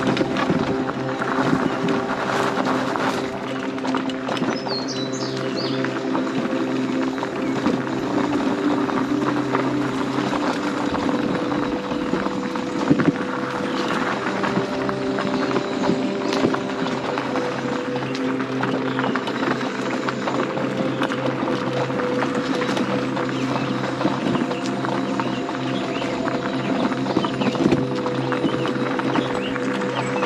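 Electric mobility scooter running along a dirt and gravel trail: a steady motor whine with a constant crackle of the tyres on the ground.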